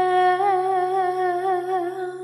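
A woman's singing voice holds one long note with a gentle vibrato on the word "berpisah", over a steady low accompanying tone.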